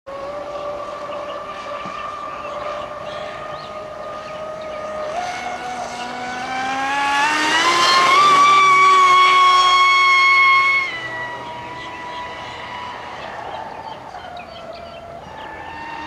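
High-pitched whine of an RC catamaran's Castle 2028 brushless electric motor running on the water. The whine is steady at first, then rises in pitch as the boat speeds up and passes close, loudest for a few seconds. About eleven seconds in it drops off suddenly to a lower, quieter whine.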